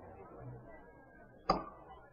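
A pause holding faint recording hiss, broken by a single sharp click about one and a half seconds in.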